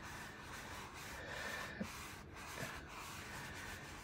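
A sponge rubbing over a dried photo transfer, scrubbing away the leftover paper backing: a steady, faint scratchy rubbing.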